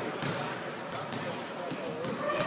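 Basketballs bouncing on a hardwood gym floor, a few separate bounces about half a second apart, with people talking in the background.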